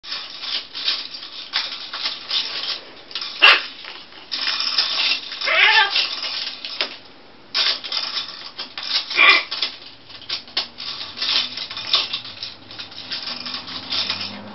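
A blue-and-gold macaw and a red macaw beaking plastic bracelets on a PVC play-stand post: a busy run of clicks and plastic rattles, with a sharp crack about three and a half seconds in. A short falling squawk from a macaw comes about five and a half seconds in, and another sharp call near nine seconds.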